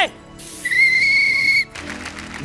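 A whistle: a steady high tone over a breathy hiss, rising slightly in pitch, lasting about a second and cutting off sharply.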